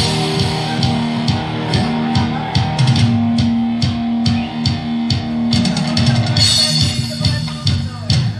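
Live rock band playing an instrumental passage: electric guitars, bass and drums, with a guitar note held for a few seconds in the middle over steady drum hits.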